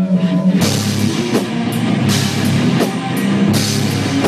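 Melodic death metal band playing live: distorted electric guitars, bass guitar and a drum kit, recorded on a mobile phone with rough, distorted sound. A held low chord opens, and the full band with drums and cymbals comes in about half a second in.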